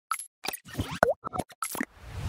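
Cartoon-style pop and blip sound effects of an animated logo intro: a quick run of about seven short pops, some sliding quickly in pitch, the loudest about a second in.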